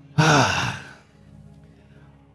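A man's loud, breathy vocal exclamation, like a drawn-out sigh, falling in pitch and lasting under a second just after the start. Faint steady background music lies under it.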